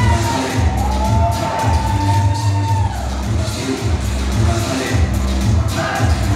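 Loud Latin dance music with a heavy bass beat, and a crowd cheering over it.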